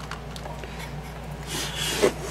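Hands handling a vintage answering machine and its tape reel: light rubbing and a few faint clicks, then a louder rasping scrape about one and a half seconds in, over a low steady hum.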